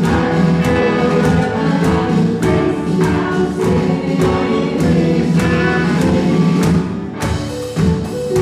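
Live worship band playing: a group of voices singing together over acoustic guitars and keyboard, with a steady drum beat. Near the end the music thins briefly and the drums carry on.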